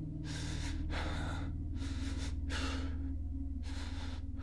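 A person breathing heavily and quickly, each breath a short airy rush about every half second, over a low, steady drone that begins just as the breathing continues.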